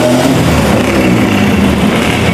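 Car engine and road noise heard from inside a moving car, a steady low drone.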